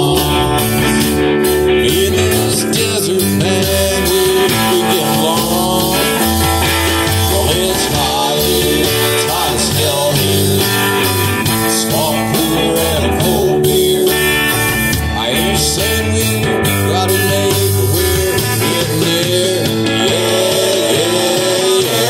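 Live country-rock band playing an instrumental break: electric guitars over bass and drums, with a lead line bending notes.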